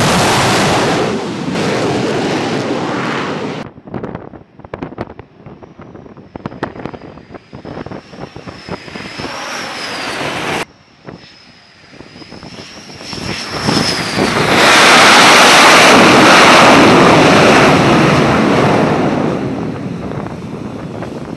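Carrier jet engines at high power on a flight deck, in several cut-together shots. Loud jet noise for the first few seconds stops abruptly. A quieter stretch follows, with a high wavering whine and scattered clicks. The noise then builds and is loudest near the end.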